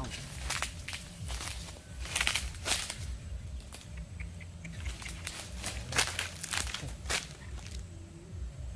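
Footsteps crunching through dry fallen leaves: a run of uneven crackling steps.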